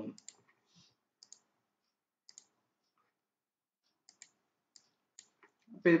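Several faint, sharp computer mouse clicks, spaced irregularly about a second apart.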